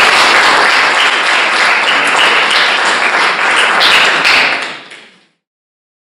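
Audience applauding, a dense patter of many hands clapping that fades out to silence about five seconds in.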